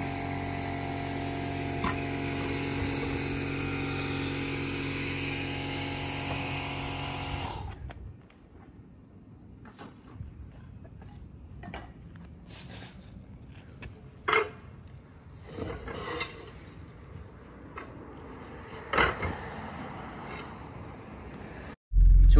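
A machine motor runs steadily for about the first seven and a half seconds, then stops. After that there is quieter job-site background with a few sharp knocks spread through the rest.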